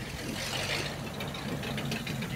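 Hot rod roadster's engine running at a low idle as the car rolls slowly past, a steady low rumble.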